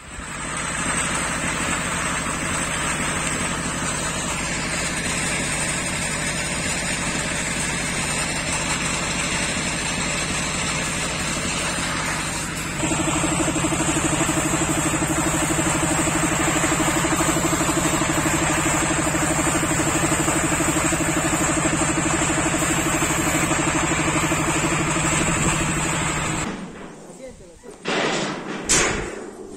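A steady mechanical drone with voices in it. About halfway through it grows louder and a steady low hum comes in, then it cuts off shortly before the end.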